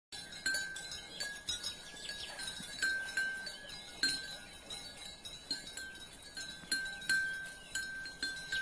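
Light tinkling chimes: irregular, scattered strikes, each ringing briefly at the same couple of pitches.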